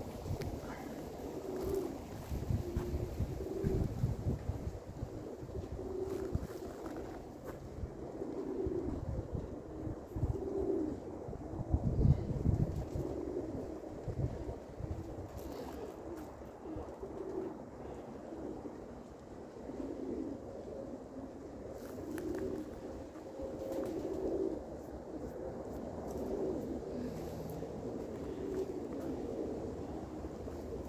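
Domestic pigeons cooing over and over, short repeated low coos, under a low rumble that is heaviest in the first half.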